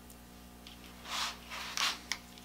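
Two brief rubbing, scraping sounds, one about a second in and a second just before the end, as hands handle a yellow plastic flashlight continuity tester and its clip lead. A steady low hum runs underneath.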